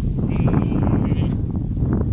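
Wind buffeting the microphone as a steady low rumble, with a few faint knocks or crunches in the middle.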